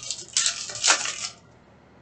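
Rustling and crinkling of a Panini Mosaic basketball card pack's wrapper and cards being handled. The sound lasts about a second, loudest near the middle, then stops.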